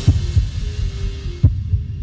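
Closing of a TV channel ident's music: deep drum beats falling in pairs, like a heartbeat, over a faint held note. The top end fades away as it draws to a close.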